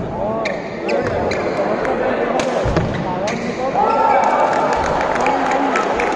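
Badminton rally: several sharp racket hits on the shuttlecock, with spectators' voices and shouts in the hall and a louder shout or cheer about four seconds in.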